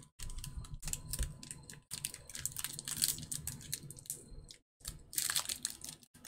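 Baseball cards being flicked through and stacked by hand, a quick run of light clicks and slaps. Near the end comes a louder stretch as a foil card pack is handled.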